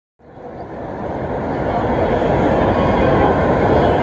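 Echoing hubbub of a busy railway station concourse: many people's footsteps and chatter blurred into a steady roar under the high roof, fading in over the first two seconds.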